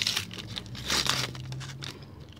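A Panini sticker packet being torn open by hand, its wrapper crinkling, with one rustle right at the start and a louder one about a second in.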